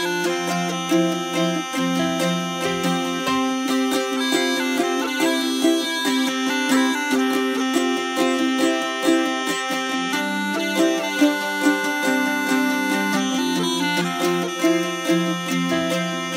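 Instrumental intro of a Celtic folk-rock song: bagpipes play the tune over strummed acoustic guitar, bass and drums, with no singing yet.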